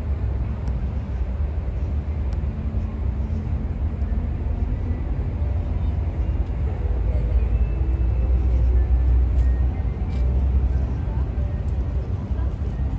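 Outdoor city ambience: a steady low rumble with faint voices of people nearby.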